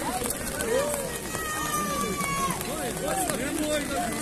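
Spectators calling and shouting over one another, many voices at once. A long, high tone that falls slightly runs through the middle for about a second.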